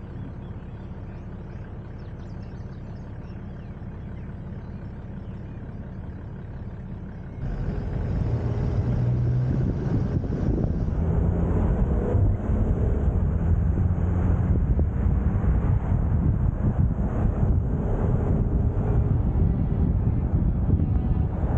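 Toyota Land Cruiser 70 driving at road speed: steady engine and road noise that jumps suddenly louder, with more wind and tyre rush, about seven seconds in.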